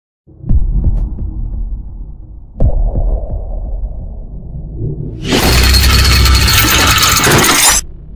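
Sound effects over a mechanical animation: two deep low hits about two seconds apart, each trailing off into a low rumble. About five seconds in comes a loud, harsh noise burst lasting about two and a half seconds, which cuts off suddenly just before the end.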